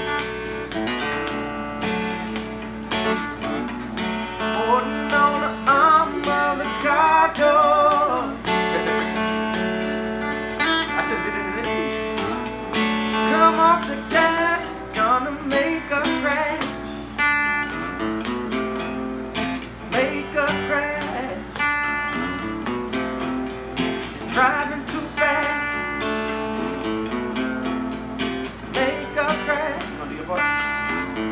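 Acoustic guitar played lap-style with a steel slide bar: picked notes and chords glide between pitches and waver with bar vibrato, in a loose instrumental passage.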